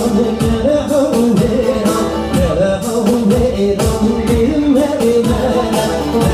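Loud amplified live music: a singer's melodic line over instruments and a steady beat of about two strokes a second.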